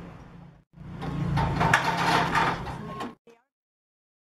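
Metal scaffolding frames being handled on a flatbed truck: a scraping, clattering run with sharp knocks and a brief ringing tone. It starts just under a second in and cuts off abruptly about three seconds in.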